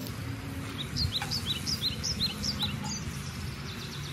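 A songbird singing a quick phrase of short, high, downward-sweeping chirps that alternate between two pitches. The phrase repeats about six times, starting about a second in and lasting about two seconds, over a steady low background rumble.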